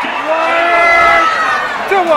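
Horse-race announcer calling the finish, holding one long raised call for over a second, with crowd noise beneath; near the end the voice drops steeply in pitch.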